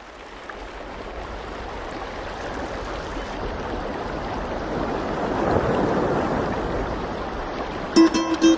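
Rushing noise like running water or surf, growing steadily louder for about six seconds and then easing a little.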